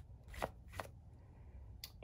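A few faint, short clicks and rustles of a plastic embroidery hoop holding a stiff vinyl-and-stabilizer piece being handled and turned.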